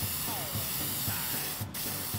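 Aerosol spray can hissing steadily as it sprays a coating onto freshly welded steel angle-iron brackets, with a brief break in the spray near the end.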